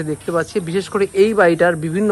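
Speech only: a man talking without pause.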